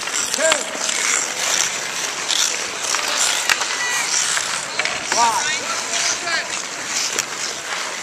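Outdoor ice hockey play: skates scraping the ice, with a few sharp clacks of sticks and scattered short shouts from players and spectators.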